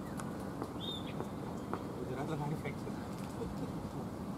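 Birds calling over a steady outdoor background, with a short high chirp about a second in, and faint distant voices.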